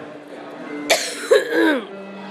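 A person coughing: a harsh burst about a second in, followed by a short voiced sound that falls in pitch.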